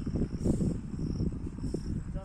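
Crickets chirping in the paddy, short high-pitched trills repeating about twice a second, over a louder, uneven low rustling rumble.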